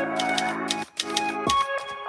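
Typewriter key-clack sound effect, a quick irregular run of clicks as on-screen text is typed out, over background music with sustained notes.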